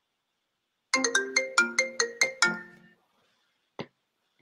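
A phone ringtone: a short melody of about nine quick chiming notes lasting about two seconds. A faint click follows near the end.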